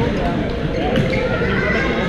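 A badminton racket striking a shuttlecock with a sharp crack about halfway through, over a babble of overlapping voices echoing in a large sports hall.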